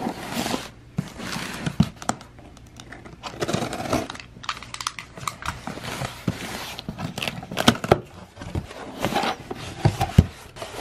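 Cardboard shipping box being opened by hand: the packing tape slit with a blade, then the box shifted and its flaps pulled back. An irregular run of scraping, rustling and crinkling with small knocks.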